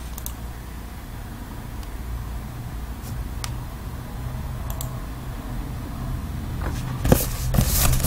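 A steady low hum with a few faint clicks. Near the end comes a louder scrape and rustle as a taped cardboard case of trading cards is grabbed and lifted off the table mat.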